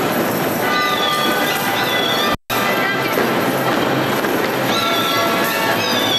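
Folk dance music with dancers' boots stamping and clattering on a wooden floor. The sound cuts out completely for a moment about two and a half seconds in.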